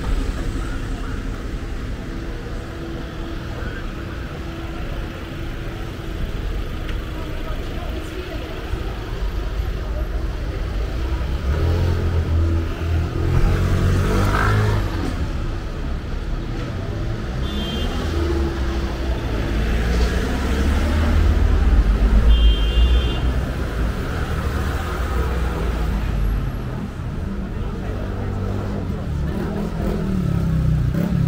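Road traffic passing close by on a busy town street: cars, vans and a motor scooter driving past in a steady rumble. One vehicle passes with a rise and fall in engine pitch about halfway through, and the traffic is loudest a few seconds later.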